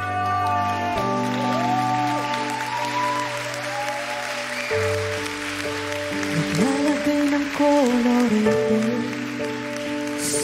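Slow Filipino pop ballad opening: sustained keyboard chords with a woman's voice singing a gliding melody over them.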